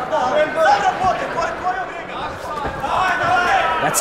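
Overlapping shouting voices from the arena crowd and the fighters' corners, with occasional dull thuds.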